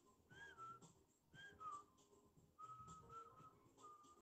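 Faint human whistling: two short notes that fall in pitch, then a longer wavering phrase and a last short note near the end.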